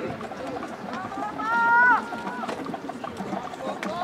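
One voice gives a drawn-out shout of about a second, rising slightly before it breaks off, over the low murmur of a stadium crowd. A shorter call follows near the end.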